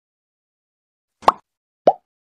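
Silence, then two short cartoon-style pop sound effects about two-thirds of a second apart, as animated icons pop onto the screen.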